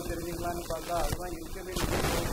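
A man talking in Tamil into a microphone, with a few sharp pops breaking through his voice.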